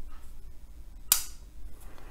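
Glenn Waters Kaiken folding knife with an M390 blade closing by hand: one sharp metallic click about a second in as the blade snaps shut into the handle.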